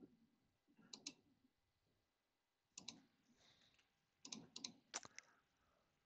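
Faint clicking at a computer, like keys and mouse buttons being pressed, in three short clusters: about a second in, near three seconds, and between four and five seconds.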